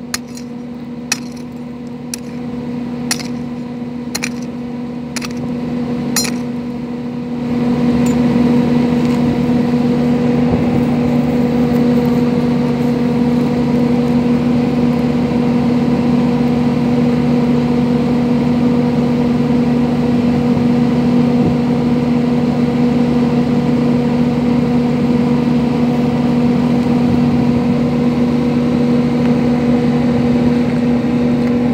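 A mattock striking stony ground, about once a second for the first seven seconds, over the steady hum of an engine. About seven and a half seconds in, the engine hum gets louder, and it then runs on steadily with no further strikes.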